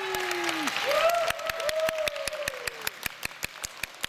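Audience clapping at the end of a song, the distinct, evenly paced claps of a modest crowd, with a few drawn-out voices calling out over the first three seconds. The clapping thins and gets quieter in the second half.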